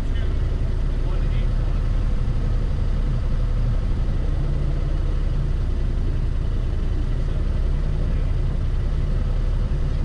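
Yamaha Wolverine X2 side-by-side's parallel-twin engine idling steadily, heard from inside the cab while the machine sits stopped at the start line.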